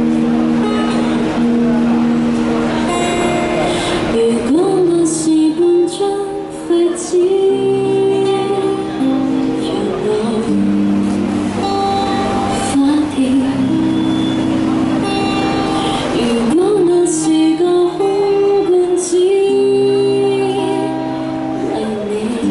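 A woman singing a Cantopop song into a microphone, accompanied by an acoustic guitar, both played through small portable amplifiers.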